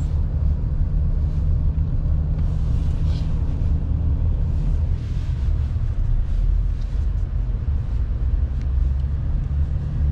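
A car moving slowly, heard from inside the cabin: a steady low rumble of engine and road noise.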